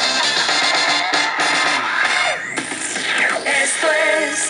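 Music playing from the loudspeaker of a Telefunken Gavotte 55 valve radio. About two and a half seconds in, the music breaks off and a different sound with gliding pitches takes over.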